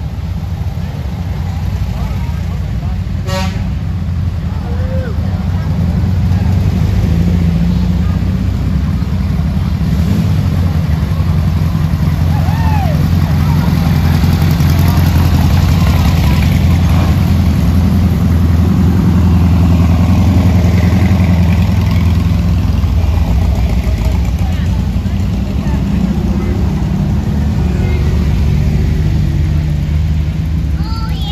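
Parade vehicles driving slowly past at close range, led by a classic air-cooled VW Beetle. A motor trike's engine makes a steady low drone that builds and is loudest in the middle. A short horn toot comes about three seconds in.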